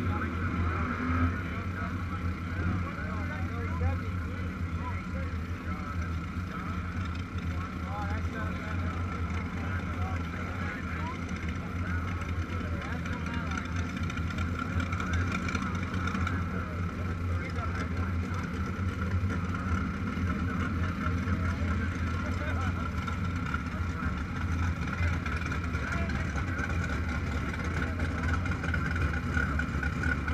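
A steady, unchanging low engine drone, with indistinct voices of people talking in the background.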